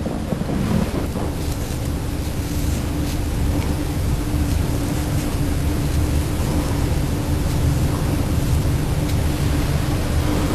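Steady background hiss with a low, constant hum and rumble, with no distinct events.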